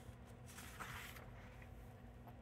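A picture-book page being turned: a faint paper rustle from about half a second to a second in, over a low steady room hum.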